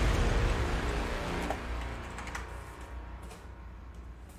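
Typing on a computer keyboard, a few scattered key clicks, under a music tail that fades away over the first three seconds.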